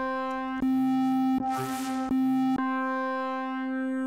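Synth lead presets of Ableton Live 12's Meld instrument auditioned one after another on a single held note. The tone colour changes at each preset switch, and one preset adds a lower octave and a breathy noise layer.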